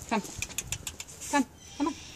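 A woman's voice coaxing a horse forward, saying "come" and then two more short calls, with scattered faint clicks in between.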